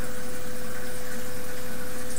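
Steady background hiss with a constant mid-pitched hum, unchanging throughout; no other sound stands out.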